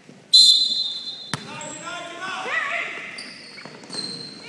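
Referee's whistle blown once, a loud shrill blast of about a second, followed by a single sharp thud, then voices of players and spectators in the gym.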